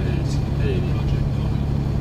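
Steady low engine and road drone of a Toyota Land Cruiser driving on the road, heard from inside the cabin, with a man briefly saying "eighty" over it.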